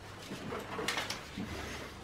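Faint rustling of fir-tree branches and needles being handled, with a brief crackle about a second in.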